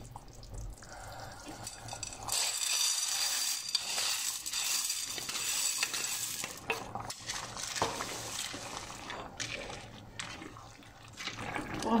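Dry ditalini-type tube pasta poured into a pan of simmering tomato and vegetable sauce: a dense rattling hiss of falling pieces that starts about two seconds in and lasts several seconds. After it come a few sharp knocks as a wooden spoon stirs the pan.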